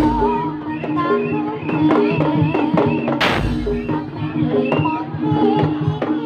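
Live Javanese Bantengan ensemble music: hand-beaten barrel drums keeping a busy rhythm under held tones and a wavering, ornamented melody, with one deep booming drum stroke about three seconds in.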